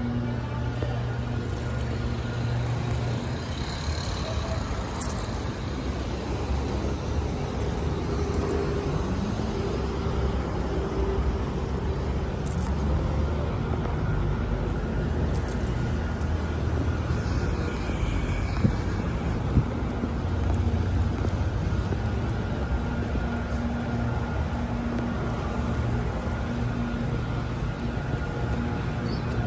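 City street traffic: a steady low rumble of cars running past and idling, with a couple of short clicks about two-thirds of the way through.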